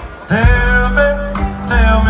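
Live country band playing, with a male singer over acoustic guitar, upright bass and drums. After a brief lull the full band and a sung line come in strongly about a third of a second in.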